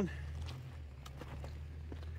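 A vehicle engine idling, a low, steady hum, with a few faint ticks like footsteps on loose stones.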